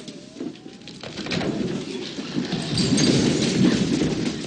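Thunder-like storm rumble with a rain-like hiss, building from about a second in and loudest near the end; a thin gliding creak sounds in the first second.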